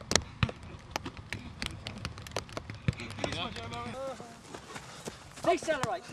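Quick footfalls of football boots on grass as a player steps rapidly through a speed ladder: a run of short, irregular taps. Faint voices talk in the background around the middle and again near the end.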